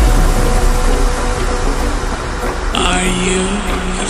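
Horror-style background soundtrack: the music drops into a deep low rumble, and near the end a held low tone and a voice-like sound come in.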